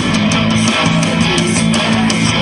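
Live rock band playing: strummed electric guitar over a steady drum beat of about four hits a second.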